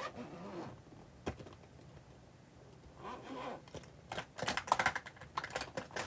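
Small clicks, taps and rustling of lipstick tubes and other cosmetics being handled and packed into a black leather bag, with a single sharp click a little after a second in and a quicker run of clicks and rustles in the last two seconds.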